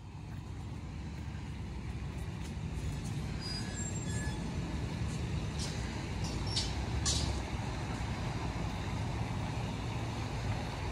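Low outdoor rumble that slowly grows louder, with a few faint high chirps about four seconds in and a couple of sharp clicks a few seconds later.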